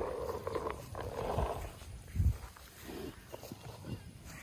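Large black-and-white steer breathing close to the microphone as it noses at a feed bowl: two long breaths in the first second and a half, then a short low thump about two seconds in.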